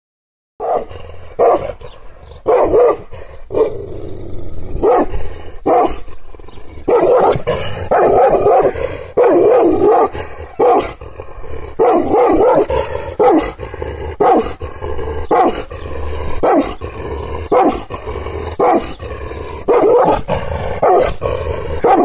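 Kangal (Anatolian shepherd dog) barking angrily in a long run of repeated barks, about one a second, starting about half a second in. The dog is being deliberately provoked, so these are aggressive guarding barks.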